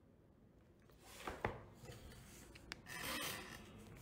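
Faint rubbing and handling noise with two small clicks, as the phone and the pointer over the page are moved.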